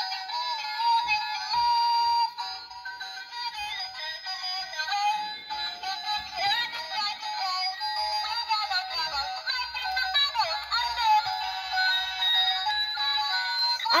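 Singing mermaid doll playing its built-in song: an electronic voice singing a melody through the toy's small speaker. The sound is thin, with no bass.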